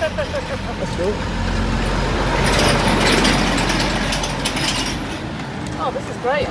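Horse-drawn carriage in motion on a paved street: wheels and fittings rattling over a low road rumble that swells to its loudest around the middle. A voice is briefly heard in the first second.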